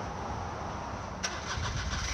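A vehicle engine with a steady low rumble, and a short rapid run of clicks starting a little past halfway.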